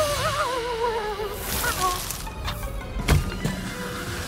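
Cartoon sound effects over background music: a hissing whoosh of icy breath, then one sharp crack just after three seconds as Mila and Morphle are frozen solid in a block of ice.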